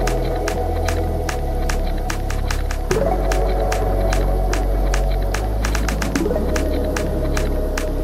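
Background music with a steady beat: regular high ticks over a deep bass line, with a rising swoosh about every three seconds.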